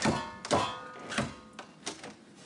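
A door handle and latch clunking four times as a double door is tried and pulled against its frame.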